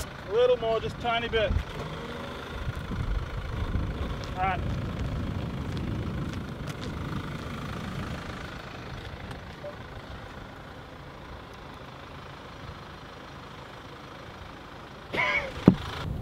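Kia SUV driving past at low speed: a low engine and tyre rumble builds over a few seconds and then fades away.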